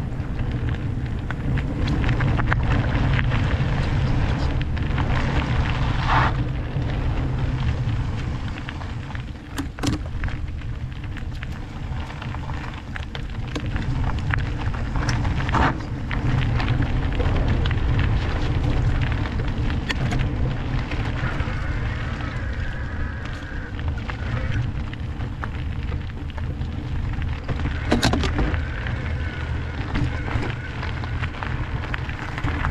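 Electric mountain bike rolling fast down a loose gravel trail: tyres crunching over gravel, with steady wind rumble on the action-camera microphone. A few sharp knocks as the bike rattles over bumps.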